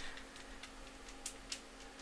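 Faint, irregular small ticks or clicks over a low steady hum, close to room tone.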